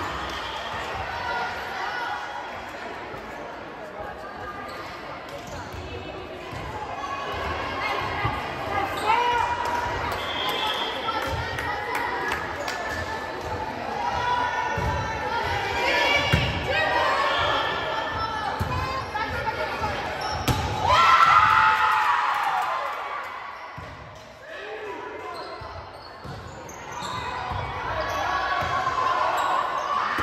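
Volleyball being bounced and hit in a large gym during a rally: repeated dull thumps of the ball on the floor and off players' arms, with voices calling and shouting that echo around the hall, loudest about two-thirds of the way through.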